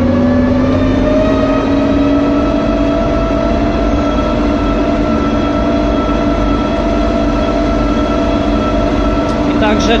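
Bizon combine harvester's engine running steadily as the machine drives along a road, its pitch rising slightly in the first second and then holding. A few spoken words come in at the very end.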